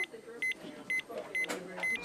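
Hospital medical monitor alarm beeping: a short, high, identical beep about twice a second, five times, with faint voices of staff underneath.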